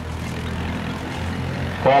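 A steady low engine rumble running on evenly, heard in a gap between words; speech comes back in just before the end.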